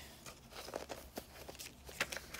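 Faint rustling of paper pages being handled in a thick handmade junk journal, with a few soft clicks and taps.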